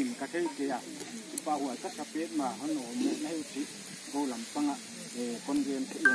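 Speech: one person talking steadily without a pause, over a faint background hiss.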